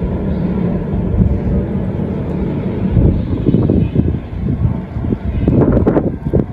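Wind buffeting the microphone outdoors: a loud, low rumble that surges unevenly, growing gustier about halfway through.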